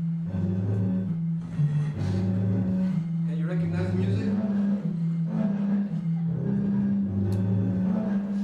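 Blown tones from two connected water bottles inside a moving car, the pitch stepping up and down between a few notes as the water level shifts with the car's speed, over car noise. Heard as a video played back through the hall's loudspeakers.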